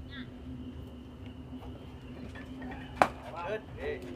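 Faint spectator voices over a steady hum, then about three seconds in a single sharp smack of a baseball, the loudest sound, followed by brief voices reacting.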